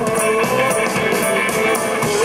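Live band music: guitar and drums with a steady beat of cymbal strokes under a held, slightly wavering melody note.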